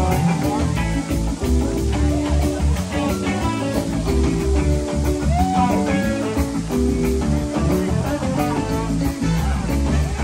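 A live band playing an instrumental rock passage led by guitar, over a steady bass line and drums.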